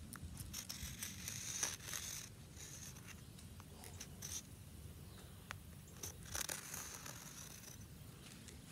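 Sidewalk chalk scraping across concrete in several strokes of different lengths, the longest about a second and a half, with a few small clicks between them.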